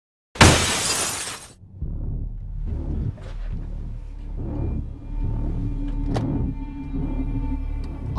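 Glass shattering in one loud crash about half a second in, struck by a swung baseball bat, followed by dark background music with a low held tone.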